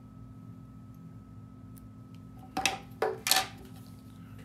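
Small metal scissors clicking and clinking a few times in quick succession about two and a half seconds in as they are handled and set down on a wooden table, over a faint steady room hum.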